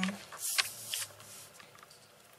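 Paper rustling and sliding as a sheet is pushed across the desk. The sound lasts about a second, with two small swells, then fades out.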